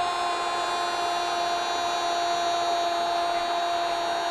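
A steady, held sound of several fixed pitches over a hiss, unchanging throughout, that cuts off near the end.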